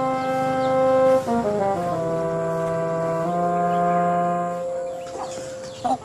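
Background music of slow, held brass chords that change a few times and fade out near the end.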